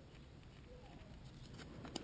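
Near silence: quiet room tone, with a few faint clicks near the end from a pencil and the plastic GPS case being handled.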